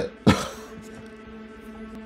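A man's single short, harsh throat-clearing cough about a quarter-second in. After it comes a steady, low held note of background score.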